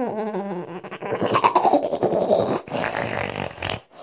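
A girl's laughing and silly wordless noises made very close to the microphone: a short wavering vocal sound, then a long noisy, breathy stretch.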